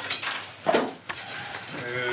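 Gift wrapping and a glass plaque being handled: a few short rustles and clatters, with people beginning to talk near the end.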